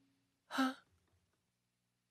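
A single short, breathy sigh from a person's voice, about half a second in, just after plucked keyboard-like music dies away.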